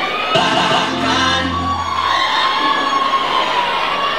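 Concert audience cheering and shouting, with held voices over the noise; about a third of a second in, the band sounds one sustained chord with a deep bass note that dies away by about two seconds.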